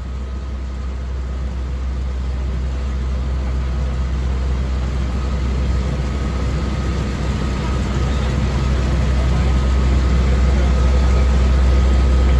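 Fire engine's diesel engine running steadily, a low drone with a faint steady whine above it, growing slowly louder.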